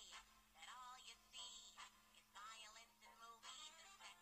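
Faint singing with music from a cartoon soundtrack, played through a phone's small speaker.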